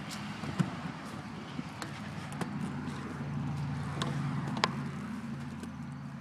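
A tire swing spinning with someone filming from it: a steady low rumble with about six sharp clicks scattered through.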